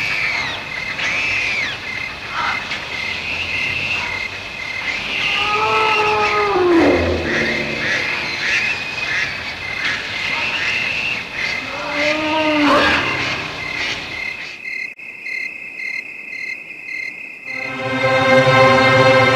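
Crickets chirping in a fast, steady pulse, with two longer pitched animal calls that rise and fall, about six and twelve seconds in.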